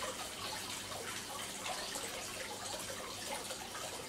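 Steady trickle and light splashing of water in a plastic fish tank.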